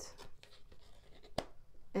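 Tarot cards being slid and laid down on a wooden table, with one sharp tap of a card about one and a half seconds in.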